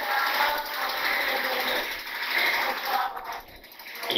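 Felt-tip marker scratching and squeaking across a whiteboard as writing is done, a continuous rough scraping that stops about three seconds in.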